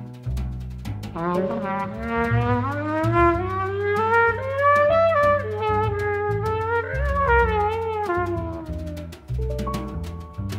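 Modern jazz band playing: a single horn line glides upward in pitch over the first few seconds, peaks about halfway, and slides back down near the end, over double bass and drums with a steady cymbal ride.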